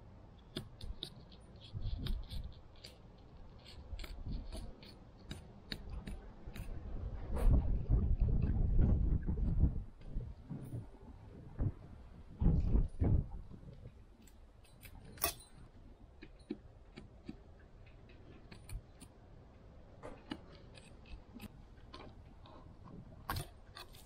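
Fillet knife cutting a fillet off a whole mahi-mahi on a plastic cleaning table: scattered clicks and scrapes as the blade runs through the skin and along the bones. From about seven to ten seconds in there is a louder stretch of low rumbling noise, and there are a few thumps a little later.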